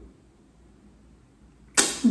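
Quiet room tone with a faint low hum, then a woman starts speaking near the end.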